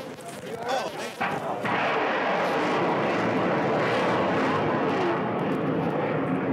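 Ship-launched Tomahawk cruise missile lifting off: the rocket booster's loud rushing noise sets in suddenly about a second and a half in and holds steady as the missile climbs.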